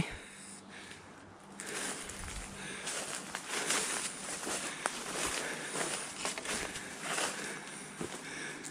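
Footsteps on dry leaf litter and brush, an irregular run of rustles and crackles that starts about a second and a half in and keeps going.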